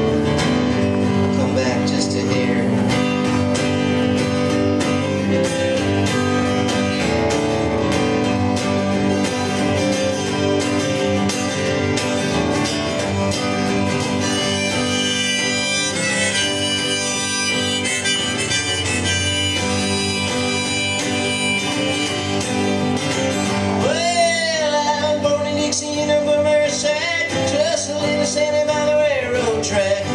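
Live acoustic guitar strummed steadily in a folk-blues song, with a sustained melody line over it that bends and wavers in pitch from about two-thirds of the way in.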